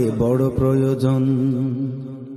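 A man singing a long drawn-out note in a Bengali devotional song, which fades away near the end.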